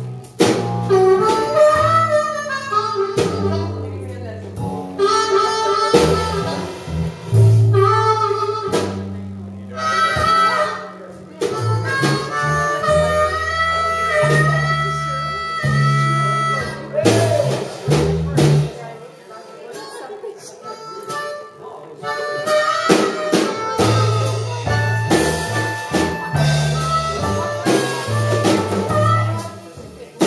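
Live band playing blues-style music: a held, wailing lead wind instrument over electric guitar, bass and drums. The bass and drums drop out briefly a little past halfway, then the full band comes back in.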